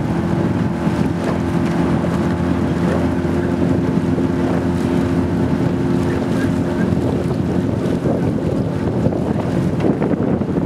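Steady hum of the camera launch's motor running alongside a rowing eight, with wind on the microphone and the rush and splash of water from the oars. The motor's hum fades about seven seconds in.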